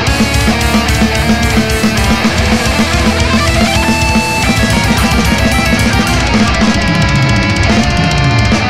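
Heavy metal song with distorted electric guitars and a drum kit driving rapid, steady bass-drum strokes. Near the end a low note slides downward in pitch.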